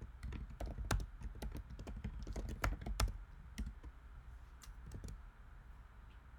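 Typing on a computer keyboard: a quick, irregular run of key clicks, a short sentence typed out, stopping about five seconds in.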